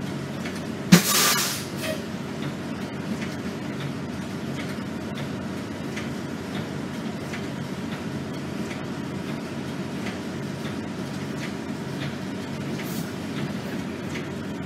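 Inside an RTS transit bus: the steady drone of the running bus, with a short, loud burst of compressed-air hiss about a second in and a few fainter hisses later.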